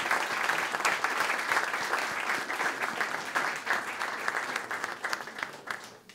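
Audience applauding, a dense patter of many hands clapping that thins out and fades away near the end.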